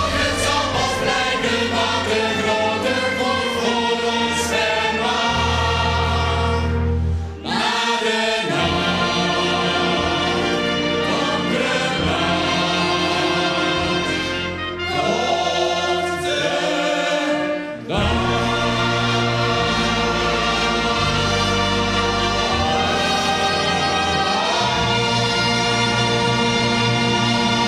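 A group of singers sings together in chorus, backed by a fanfare band of brass and wind instruments. The music runs steadily, with a few brief breaks between phrases.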